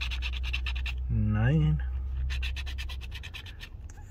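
A coin scratching the coating off a scratch-off lottery ticket in rapid strokes, in two spells: it pauses about a second in and stops about three seconds in.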